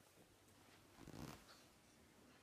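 Near silence: room tone, with one soft, brief noise a little over a second in.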